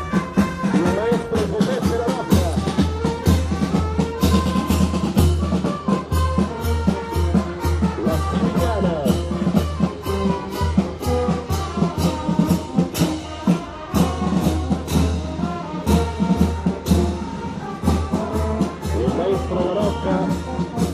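Brass band playing with brass instruments over a steady drum beat.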